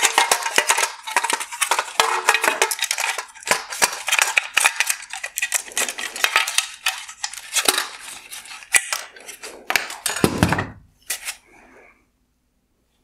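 Hard plastic headlight parts clicking and rattling against each other as the HID projector is worked free of its black plastic bracket by hand, with a duller knock about ten seconds in.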